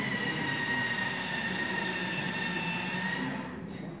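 Live noise music: a loud, sustained electronic screech, a high whistling tone that glides slightly down and then holds over a wash of hiss. It fades out about three and a half seconds in.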